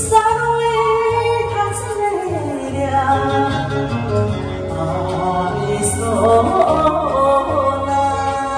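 A woman singing a Japanese enka song through a handheld karaoke microphone over a recorded backing track, holding long notes that slide down in pitch.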